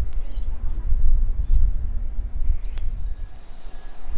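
Outdoor street ambience: a low, uneven rumble with a few faint high chirps in the first half second.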